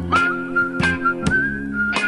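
Progressive rock instrumental passage: a whistle-like melody line holding a high note with small steps in pitch, over sustained guitar and bass notes, with sharp drum hits about every half second.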